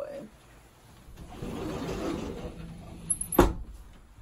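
Soft rustling and shuffling of a person shifting on a couch, then one sharp knock about three and a half seconds in.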